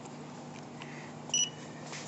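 Card payment terminal giving one short, high-pitched electronic beep about a second and a half in, over a faint steady background hum.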